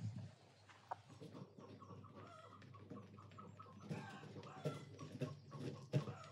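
Chickens clucking in short repeated calls, over scattered clicks and crunches of a loaded wheelbarrow being pushed along a gravel track.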